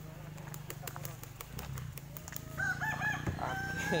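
A rooster crowing, one long call that starts a little past halfway through, preceded by a few light clicks.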